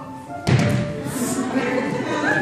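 A single loud thump about half a second in, from a child landing on the wooden gym floor after jumping down from the stage steps, followed by music and children's voices.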